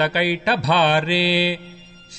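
A solo voice chanting Sanskrit devotional verse in a sung recitation melody. The last syllable is held on one steady note for about half a second, then the voice stops for a breath near the end.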